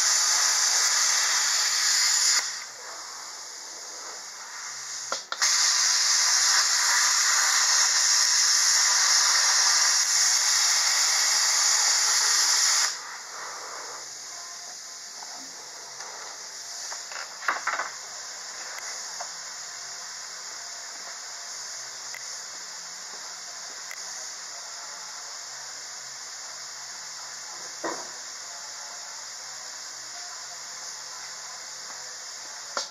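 Electric arc welding on steel: two runs of steady hissing and crackling arc, a short one at the start and a longer one of about seven and a half seconds, stopping about 13 seconds in. After that only a few small clicks and knocks.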